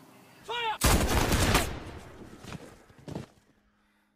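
Execution volley of gunfire: a dense burst of overlapping shots about a second in, lasting under a second. Two single shots follow, the last just after three seconds.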